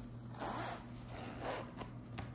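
Zipper on a fabric pouch being pulled along its track in two short runs.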